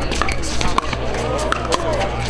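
Pickleball paddles striking a hard plastic pickleball in a doubles rally: several sharp pops, a fraction of a second to about three-quarters of a second apart.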